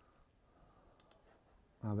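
Near-quiet room tone with two faint, short clicks about a second in. A man's voice starts speaking near the end.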